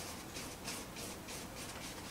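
Paintbrush bristles scratching across stretched canvas in a rapid run of short strokes, about four or five a second, as oil paint is dabbed in along the tree line.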